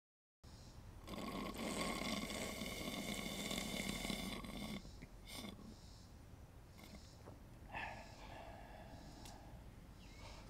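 A person's long, rasping groan-like exhale of about four seconds, worn out by the heat, followed by softer breaths and small mouth sounds.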